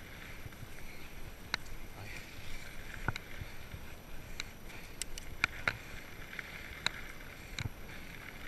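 Salsa Bucksaw 2 full-suspension fat bike rolling over a dirt trail: a steady rolling noise with scattered sharp clicks and knocks as the bike goes over bumps, coming more often in the second half.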